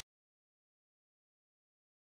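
Complete silence: the audio track is empty.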